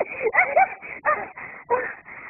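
Donkey braying in a rapid series of hee-haw cycles, pitched calls alternating with rougher, breathier ones several times a second.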